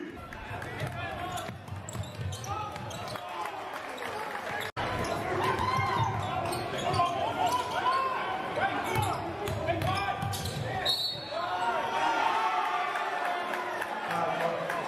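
Live basketball game sound in a gymnasium: the ball bouncing on the hardwood under overlapping spectators' voices and shouts that echo in the hall. The sound cuts out for an instant about five seconds in, then continues louder.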